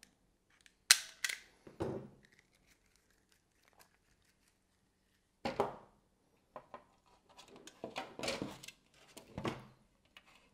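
Hookup wire being cut and stripped with a hand tool: a sharp snap about a second in, a second one just after, and a softer one near the two-second mark. Scattered clicks and rustles of handling wire and the plastic kit chassis follow later on.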